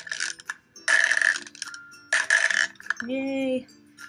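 Glass marbles dropped one at a time into a plastic cup, each landing with a short clinking clatter, about a second apart. A short hummed vocal sound follows near the end.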